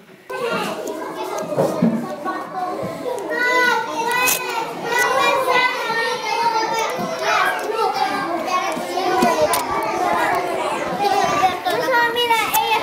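Classroom chatter: many children talking at once in a steady babble of overlapping young voices, which starts suddenly just after the beginning.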